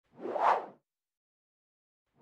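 A single whoosh sound effect from an animated title intro: one short rush of noise that swells and fades away about half a second in.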